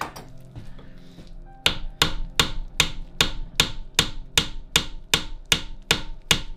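A large crosshead screwdriver struck on its handle in a quick, even run of sharp taps, about two and a half a second, starting about a second and a half in. The blows shock the threads of a tight crosshead screw in the engine crankcase to free it.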